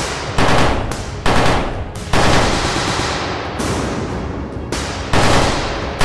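Automatic rifle fire as a cartoon sound effect: rapid, dense bursts of shots, with several louder bangs that ring out and fade, about four in all.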